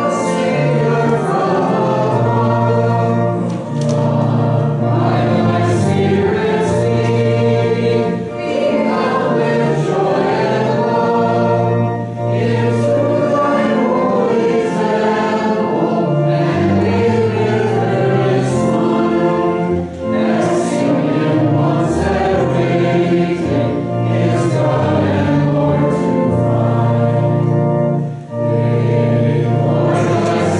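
A church congregation singing a hymn together, phrase by phrase, with short breaks between the lines.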